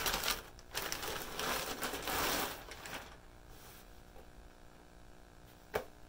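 Plastic poly mailer bag crinkling and rustling as a pair of shorts is pulled out of it, several rustles over the first three seconds, then dying down, with a single click shortly before the end.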